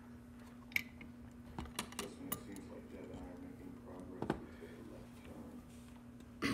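Small metal locks being handled on a wooden workbench: a few sharp clicks and clinks as a lock is taken out of a metal vise and a padlock is set down, the clearest about a second in and again past four seconds, over a faint steady hum.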